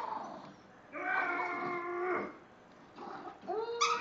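A small dog tugging on a plush toy gives one long, even-pitched whine lasting over a second, in the middle of a game of tug.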